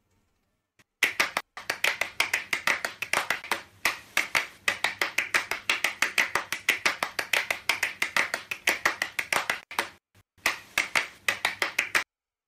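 A rapid run of sharp clicks or taps, about six a second, in an intro sound effect. It starts about a second in, breaks off briefly twice, and stops suddenly at the end.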